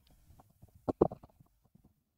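Handling noise from hands turning the ball head assembly of an Elgato Wave Mic Arm with the microphone mounted on it: a few soft knocks and clicks, the loudest two about a second in.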